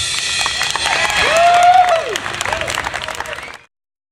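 Audience applause, many hands clapping, with a long cheer rising and falling about a second and a half in; the sound cuts off suddenly near the end.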